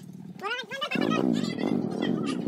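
A trail motorcycle engine labouring, its pitch surging up and down over and over as the rider works the throttle, starting about a second in; a voice calls out just before it.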